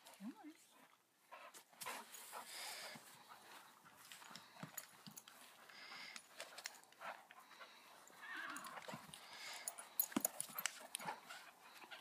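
Airedale terriers moving about and scuffling, heard as scattered small knocks, scuffs and clicks with a few short rushes of noise.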